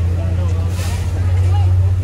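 Low, steady engine drone of a nearby motor vehicle running, growing a little louder in the second half, with people talking over it.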